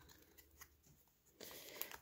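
Near silence, then faint handling noise starting about one and a half seconds in, as a foil trading-card pack is picked up.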